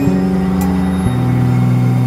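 Layered experimental electronic music: sustained synthesizer tones over a low drone, the pitches shifting in steps just after the start and again about a second in.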